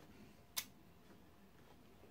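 Near silence while the sewing machine is stopped, with one sharp click about half a second in.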